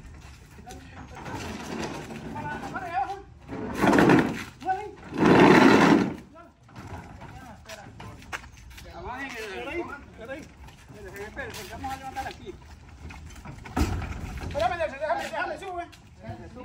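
Voices of several people talking in the background as a crew works. Two loud rushing noises come about four and five seconds in, and a low thump near the end.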